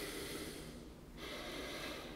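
A man breathing audibly into a microphone close to his face: two noisy breaths with a short gap between, the first fading out under a second in and the second starting a little after a second.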